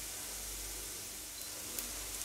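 Vegetable patties frying in sunflower oil in a pan: a faint, steady sizzle of the oil.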